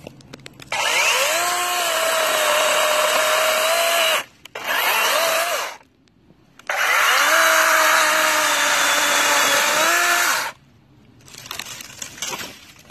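DeWalt 20V XR cordless chainsaw spinning up with a rising whine and cutting through branches, then winding down when the trigger is let go. It makes three runs: a long one, a short one about four seconds in, and another long one. Its pitch sinks a little during each run.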